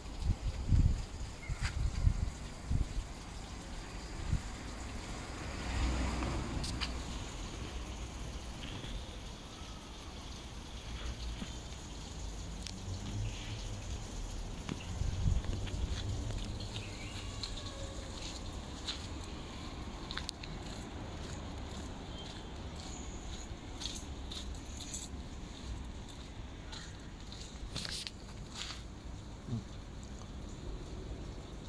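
Outdoor ambience: a steady low rumble and hiss, with several low thumps in the first few seconds and again about midway, and scattered light clicks toward the end.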